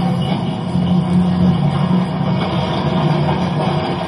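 Soundtrack of an animated web episode: a steady, loud low rumbling drone with faint music over it.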